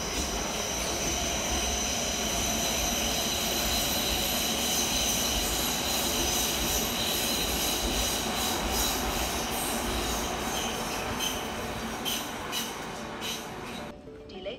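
Berlin S-Bahn electric train running past with its wheels squealing: a steady rolling rumble with several high, thin squeal tones over it, and a few clicks near the end.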